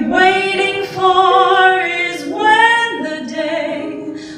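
A woman singing a slow show tune into a microphone, holding long notes of about a second each with vibrato.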